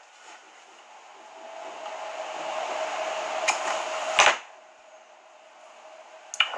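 Synthetic fly-tying fibre being pulled from its hank: a rustling hiss that builds over about three seconds with a steady hum under it, ending in one sharp snap as the clump comes free.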